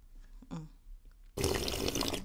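A sip of drink slurped from a mug close to the microphone: a short noisy slurp about a second and a half in.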